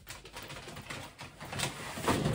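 Rustling and crackling as clothes and a bag of clothes are handled and pulled about, growing louder near the end.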